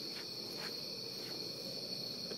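Night insects trilling steadily at a high, even pitch, with a couple of faint soft rustles early on.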